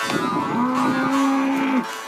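A cow moos once: one long, steady call of just over a second that stops abruptly near the end.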